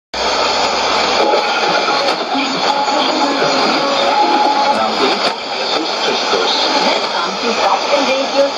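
Shortwave AM broadcast on 11695 kHz heard through a Sony ICF-2001D receiver: Vatican Radio's programme audio, music and voice, under steady hiss and static, with short held tones from the music.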